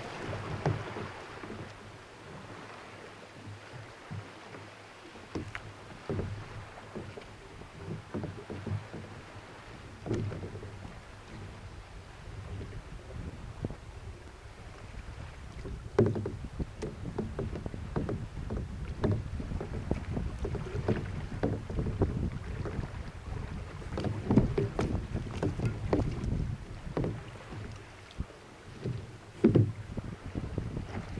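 Kayak paddle strokes splashing and water washing along the hull, with wind rumbling on the microphone. The splashes come irregularly and grow busier and louder about halfway through.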